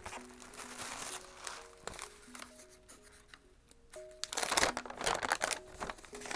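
Paper rustling and crinkling as a folded letter is handled and opened out, loudest in a burst of crackles about two-thirds of the way in. Underneath runs soft background music of slow, held notes.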